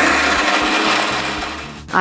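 Electric kitchen mixer grinder running, grinding onions, with a dense steady whirr that fades away near the end.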